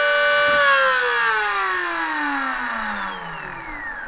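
Brushless electric skateboard motors driven by a FOCBOX Unity dual motor controller whining at a steady pitch, then cut about half a second in and spinning down, the whine falling steadily in pitch and fading. It is the end of an 80-amp open-loop thermal test.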